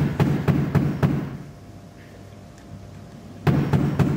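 Rapid knocking in two series of about four knocks a second, the second series starting after a pause of about two seconds.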